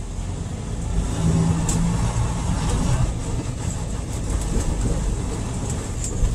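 Semi truck's diesel engine running at low speed, a steady rumble heard from inside the cab as the truck moves slowly.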